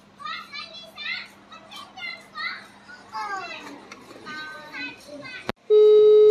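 High-pitched children's voices chattering and squealing in a voice message played back on a phone. Near the end there is a click, then a loud steady beep starts.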